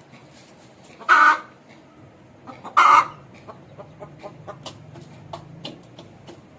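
Aseel hen giving two loud clucking calls, about a second and a half apart, with light clicks of pecking at grain in a metal feeder around them.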